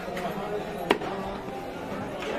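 A heavy cleaver chops once through a flathead grey mullet into a wooden log chopping block, a sharp impact about a second in.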